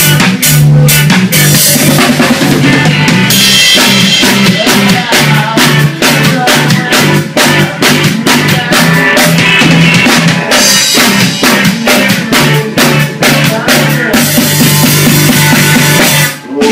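Live ska-reggae rock band playing an instrumental passage: drum kit keeping a steady beat, electric bass playing a line of held low notes, and electric guitar, loud and close.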